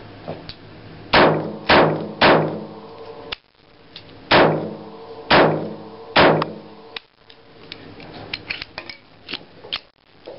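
Jennings J22 .22 LR pistol fired six times: three shots about half a second apart, a pause, then three more about a second apart, each crack followed by a ringing echo under the range's shelter roof. Several fainter sharp clicks follow near the end.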